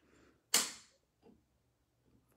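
Resistance knob of a Lifepro FlexCycle pedal exerciser being turned down, giving one sharp click about half a second in that dies away quickly, and a much fainter click a little later.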